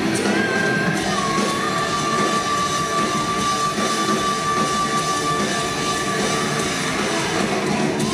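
Live heavy metal band playing full out, with one long high note held steady over the band from about a second in until near the end.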